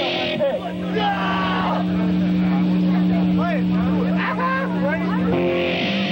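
Live hardcore punk band: a distorted electric guitar holds one low note that drones steadily, with wavering squeals and shouted voices over it. Fuller guitar playing comes back in near the end.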